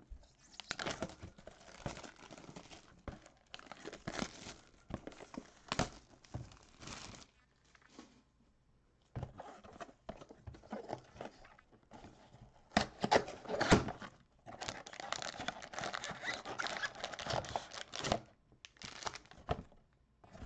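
A cardboard trading-card mega box being torn open by hand and its card packs pulled out: irregular tearing, rustling and crinkling with light knocks of cardboard, in short runs with brief pauses.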